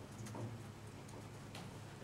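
Computer keyboard keystrokes: a few quick, irregular clicks as a short terminal command is typed and entered, over a steady low hum.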